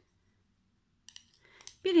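Near silence with a couple of faint clicks about a second in, then speech begins at the very end.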